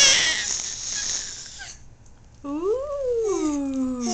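Baby squealing with delight: a loud high squeal trails off into breathy laughter in the first couple of seconds, then a long drawn-out squeal rises and falls in pitch toward the end.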